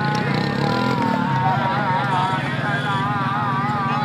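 A drawn-out, wavering voice over a steady low engine drone.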